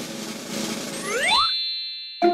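Cartoon sound effects: a whoosh that fades out, then, about a second in, a quick rising glide that ends in a bright, ringing ding.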